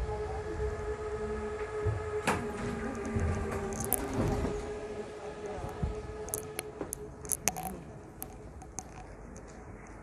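Steady electrical whine with many overtones from a Stadtbahn train standing at the underground platform, fading away about seven seconds in. Light clicks sound over it.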